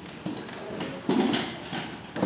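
A few light knocks and shuffles of feet on a wooden floor, with a louder thud about a second in.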